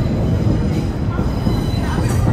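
A train running on the railway above the market, a steady low rumble with faint high-pitched wheel squeal, over the chatter of the market crowd.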